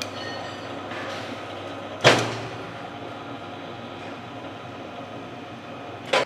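Electric steel bar bending machine running under test, its motor and gearbox turning the bending disc with a steady hum. A sharp clunk comes about two seconds in, and the machine keeps running after it.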